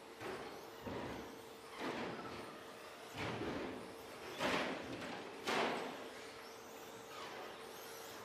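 Electric 1/10-scale 2WD short course RC trucks with 13.5-turn brushless motors running on an indoor track: short swells of motor and tyre noise about once a second as they pass, over a faint steady hum.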